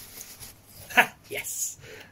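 Soft rustling of toilet-paper packing being pulled away by hand from a plastic miniature, with one short, sharp sound about a second in.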